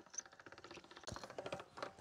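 Hand-cranked pasta machine turning, its crank and roller gears giving a rapid, faint clicking as a sheet of pasta dough is fed through the rollers; the clicking grows a little louder in the second second.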